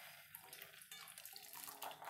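Faint steady rattling rush of raw peanuts being poured from a plastic container into a small ceramic bowl.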